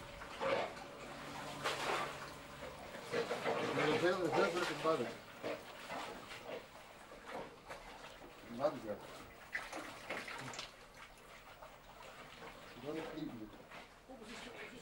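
Low, indistinct voices of men working in a flooded tunnel, loudest around the middle, with water and mud sloshing and splashing as they move.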